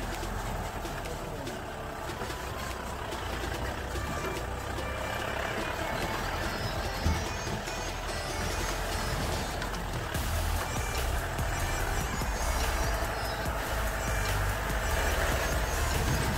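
Off-road jeep driving slowly over a rough dirt track: a steady low engine and road rumble, with background music laid over it.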